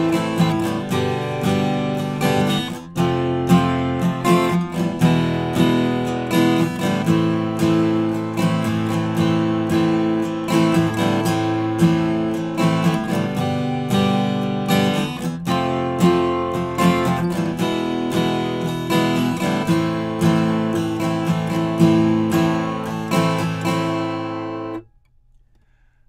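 Acoustic guitar strumming a chord progression in A minor that uses the major V chord, E major, borrowed from A major, in a steady rhythm. The strumming stops about a second before the end.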